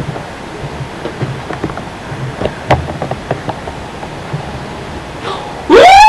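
Steady hiss with scattered soft taps and knocks. Near the end a sudden loud, high-pitched cry rises and then falls in pitch, by far the loudest sound.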